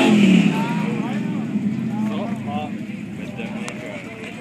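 Mud-bog truck's engine running in the mud pit, loudest at the start and dying away over the first couple of seconds, with onlookers' voices chattering over it.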